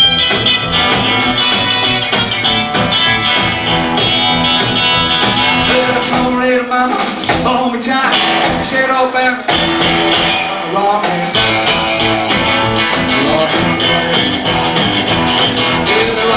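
Live rockabilly band playing: electric guitar over a steady drum beat, with a man singing. In the middle the bass end drops back for a few seconds, leaving mostly guitar.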